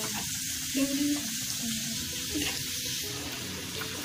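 Steady sizzling hiss from a hot wok on the stove, the sound of food cooking in hot oil and liquid.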